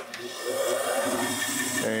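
Bandsaw switched on: the motor and blade start up, building over about half a second to a steady running sound with a thin high whine.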